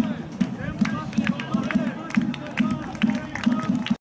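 Background music with a steady low beat, about three beats a second, mixed with people's voices.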